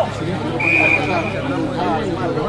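Rugby referee's whistle: one single-pitched blast of about a second, strongest at its start, stopping play at a ruck. Players and spectators shout throughout.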